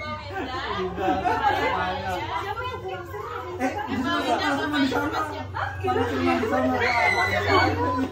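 Several people talking at once, overlapping indoor chatter with no single clear voice.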